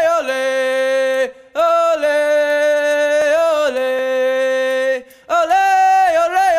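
Unaccompanied solo voice singing long held notes with a slight waver in pitch. The phrases are broken by two short pauses, about a second in and near the end.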